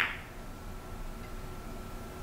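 Quiet room tone: a low hum and a faint hiss with a thin steady high tone, and no distinct ball clicks.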